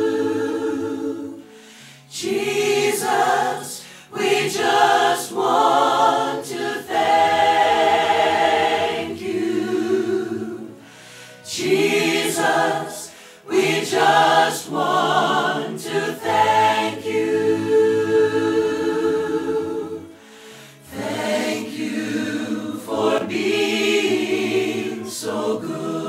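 Church choir singing in parts, phrase by phrase, with short breaths between phrases about two, ten, thirteen and twenty seconds in.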